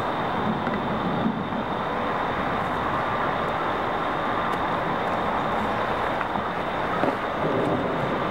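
Steady, even rushing outdoor background noise with no clear events in it.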